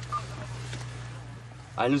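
Military field radio handset giving one short beep over a steady low hum and faint outdoor background noise.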